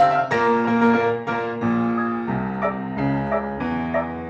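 Two pianos, a grand and an upright, playing a piece together: held chords and melody notes, with fresh notes struck every half second or so.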